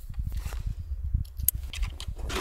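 Low, gusty rumble of wind on the microphone, with faint rustling and one sharp click about one and a half seconds in.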